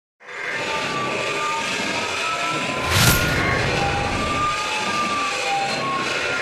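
Sound effects for an animated TV reporter's logo intro: a steady noisy rush like passing traffic with short whistling tones, and one loud whoosh about three seconds in.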